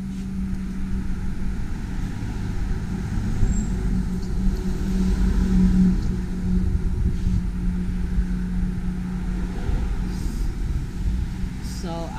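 Steady low rumble of highway traffic with a constant engine hum, swelling louder about five seconds in as a vehicle goes by.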